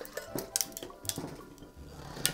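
Ice and metal clinking in a two-piece gold Parisian cocktail shaker as the drink is poured from one tin into the other over the ice, a handful of short sharp clicks, under faint background music.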